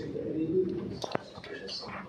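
A sharp metallic click about a second in, from a screwdriver working a metal pipe strap that clamps orange electrical conduit to a wall, over a faint low background murmur.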